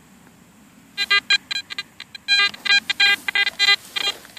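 Garrett AT Gold metal detector falsing: from about a second in it sounds off in short, erratic, broken bursts of its buzzy target tone, thicker in the middle and thinning near the end. It is the chatter that the owner cannot stop by changing discrimination or frequency or by lowering sensitivity and threshold.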